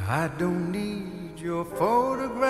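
A man singing the first phrases of a slow ballad, two sung phrases with a short breath between them, over soft piano accompaniment.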